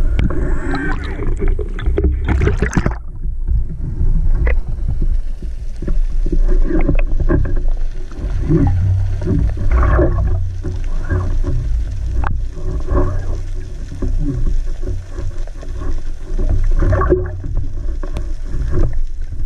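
Underwater sound picked up by a camera: a continuous low rumble of water moving around the housing, broken by scattered sharp clicks and short crackles.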